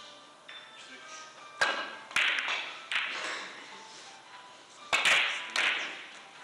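Carom billiard balls clicking during a three-cushion shot: the cue strikes the cue ball about a second and a half in, then come several more sharp clicks of ball on ball, about five in all, the last pair near the end, over background music.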